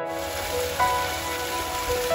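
Water splashing and trickling down a rock-face cascade, a steady hiss, under soft piano background music.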